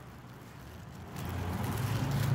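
Low, steady outdoor rumble that grows louder a little over a second in.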